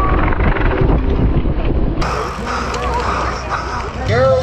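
Wind buffeting a helmet-mounted camera's microphone as a BMX rider rides along, a steady low rumble mixed with tyre noise.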